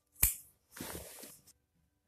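A sharp knock, then about three-quarters of a second of rasping as a utility knife slices through dense non-woven felt damping mat.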